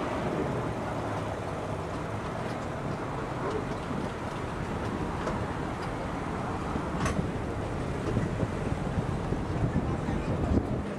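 Steady running noise of a tourist road train heard from on board: a low engine hum with street traffic around it, and one sharp click about seven seconds in.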